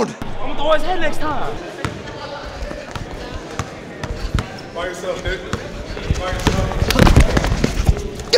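A basketball dribbled on a gym floor in a run of short thumps, with people talking over it.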